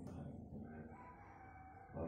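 A faint animal call, one long drawn-out note.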